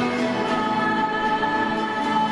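A small group of voices singing a slow devotional hymn in long held notes, accompanied by acoustic guitars.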